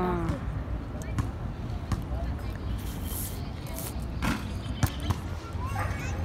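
Outdoor urban park ambience: a steady low rumble with faint distant voices, broken by a few short sharp knocks.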